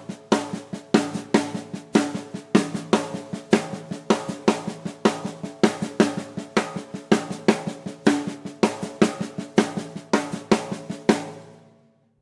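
Snare drum played with the left hand alone in a steady stream of sixteenth notes, the accented strokes hit as rim shots standing out above quiet ghost notes, with the hi-hat foot keeping quarter notes underneath. The playing stops about a second before the end.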